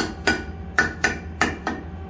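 Mallet tapping the face of a steel blank held in a four-jaw lathe chuck, six sharp taps in quick pairs, each with a short metallic ring, to seat the part against a spacing ring.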